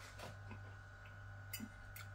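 Quiet stretch of chewing with a low steady hum underneath, and a light click of a metal fork touching a plate about one and a half seconds in.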